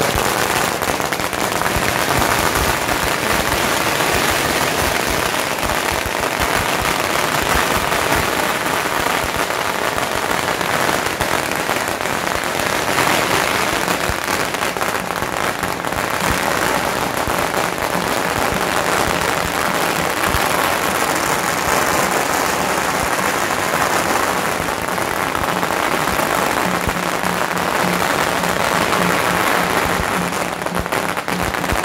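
Long strings of red firecrackers going off in a dense, unbroken crackle of small rapid bangs, starting abruptly and keeping up without a pause.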